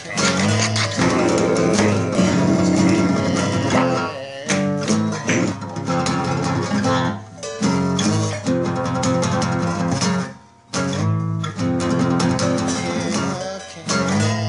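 Instrumental passage of a song: acoustic guitar strummed and picked in chords, with a brief break about ten and a half seconds in.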